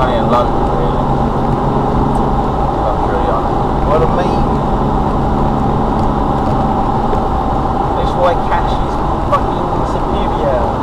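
Steady road and engine noise inside a moving car's cabin on a dual carriageway, picked up by a dashcam's microphone, with faint voices underneath.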